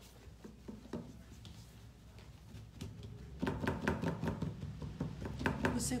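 Cloth rubbing and dabbing over a wet-painted plaster frame on a wooden table, wiping off excess paint: light scuffs and taps, sparse at first, then a quick busy run about halfway through.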